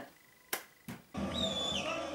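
Near silence with two short clicks, then, a little over a second in, stadium crowd sound recorded from the stands cuts in: many fans chanting together, with a high wavering tone over it.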